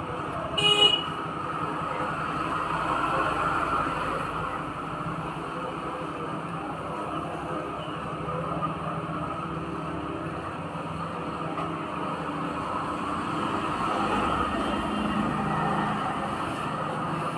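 Steady background road-traffic noise with a brief vehicle horn toot about a second in.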